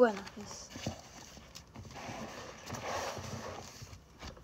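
A voice gliding down in pitch right at the start, then paper rustling and light knocks as a workbook's pages are handled on a desk.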